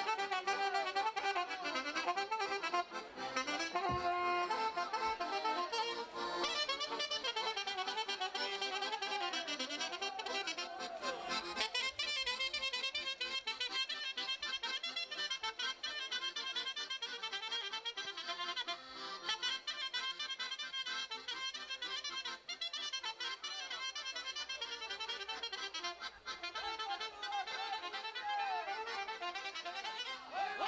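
Instrumental Romanian folk dance music played for couple dancing, with ornamented, sliding melody lines that turn into faster, denser playing about twelve seconds in.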